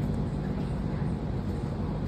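Steady low hum of a large drum fan running in the gym.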